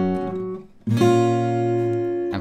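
Steel-string acoustic guitar, tuned down a half step, playing two fingerpicked rolled chords. The first is a G major shape, which rings and is damped by about half a second in. The second is a B minor shape, struck about a second in and left ringing.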